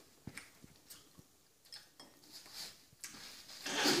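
Quiet small clicks and rustles as jelly beans are picked up and chewed, then a louder breathy mouth sound building about three seconds in.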